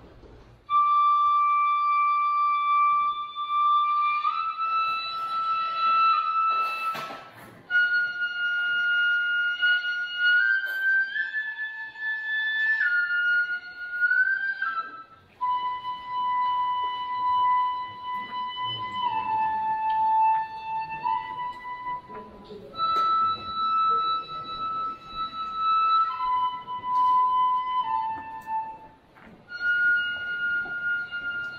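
Traditional Japanese shrine wind music: a high, wind-instrument melody of long held notes that step up and down in pitch every few seconds, with brief breaks between phrases.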